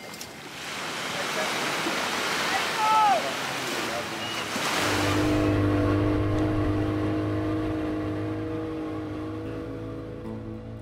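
Surf washing onto a sandy beach. About halfway through, the boat's outboard motor is running at speed, a steady drone with water rushing past the hull.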